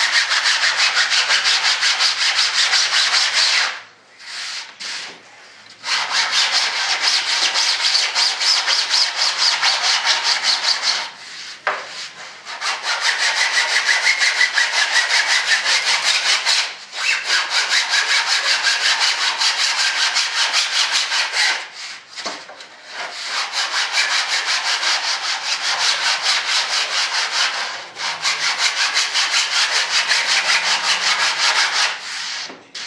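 Hand sanding with a sanding block on a hardwood trailing edge: quick back-and-forth rasping strokes, about five a second, broken by several short pauses.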